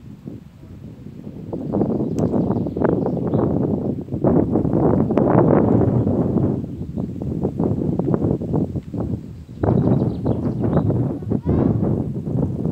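Wind buffeting the microphone: a loud, fluttering rumble that builds over the first two seconds and dips briefly about nine and a half seconds in.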